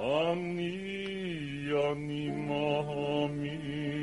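A cantor's tenor voice singing a liturgical melody: it sweeps sharply up into a long held note, then drops to a lower held note with vibrato about a second and a half in, over sustained accompaniment.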